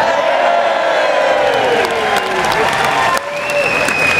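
Audience applauding and cheering at the end of a performance, with long falling whoops over the clapping and a high held tone near the end.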